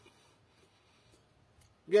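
Near silence in a pause between a man's words. His voice starts again just before the end.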